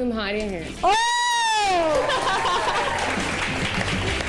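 A loud, long, high-pitched teasing "Ooooh!" exclamation that rises and then falls in pitch over about a second, after a brief spoken "Oh!". A jumble of voices follows.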